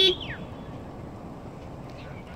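A single spoken word at the start over a whistled tone that glides down in pitch and fades out within half a second, followed by steady low outdoor background noise.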